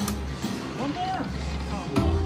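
A Lightning Link Tiki Fire video slot machine playing its electronic tones and music as a spin starts and the reels turn, over a steady casino background din.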